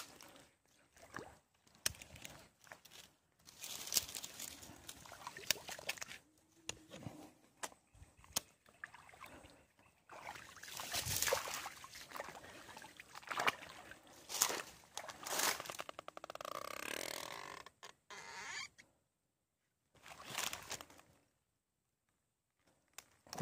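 Irregular rustling and crackling of dry grass and reeds, with footsteps and knocks of handling close to the microphone. It drops to near silence for about a second near the end.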